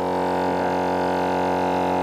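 GSPSCN 12-volt portable tire inflator's compressor running under load, a steady, unbroken drone, as it pumps air into a tire that is still well short of its 80 PSI.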